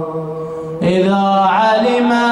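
A man's unaccompanied solo chanting of a Shia mourning elegy, holding long melismatic notes. A low held note trails off, then a new phrase starts a little under a second in, bends in pitch, and settles on a higher held note.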